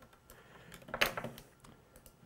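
A few faint clicks on a laptop as objects are selected and a menu is opened, with one sharper click about a second in.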